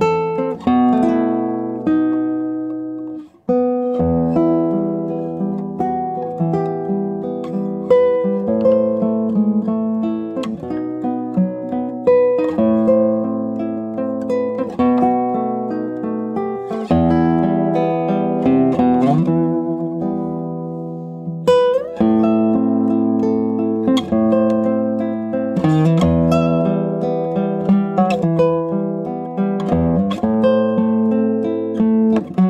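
Solo classical guitar played fingerstyle, plucked melody notes over bass notes, with a brief pause about three and a half seconds in and a few sliding notes later on.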